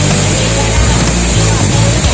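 Steady rush of a waterfall pouring into a rock pool, with background music and its held bass notes running underneath.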